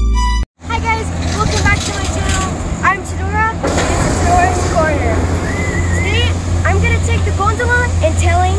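An electric-piano intro tune cuts off about half a second in. A steady low outdoor rumble follows, with a girl's voice heard over it.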